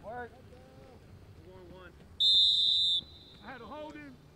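Referee's whistle blown once, a single loud, shrill blast of just under a second about two seconds in, followed by a faint trailing tone; the whistle that blows a play dead in flag football. Players' shouts can be heard around it.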